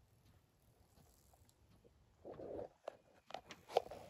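Faint rustling and crunching of dry leaves and twigs underfoot, starting a little past halfway, with a few sharp snaps and crackles near the end.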